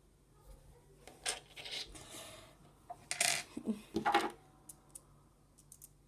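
Handling noises as a small rock is picked up off a hard tabletop: a few short scrapes and rubs, then light clicks near the end.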